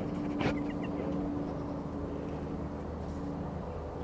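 A motor running steadily somewhere, a low even drone with one steady tone, and a single sharp knock about half a second in.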